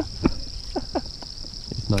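Steady high-pitched chorus of insects, such as crickets, running without a break, with a few short sounds in the first second and a voice starting just at the end.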